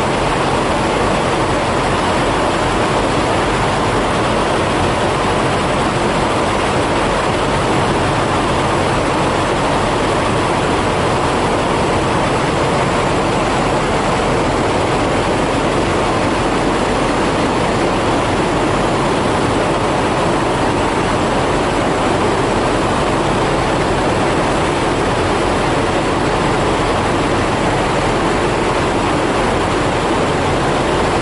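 Steady running noise of idling diesel semi trucks, an even rumble and hiss with a low hum that does not change.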